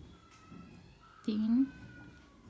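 A single short word in a woman's voice about a second in, with faint room tone either side of it.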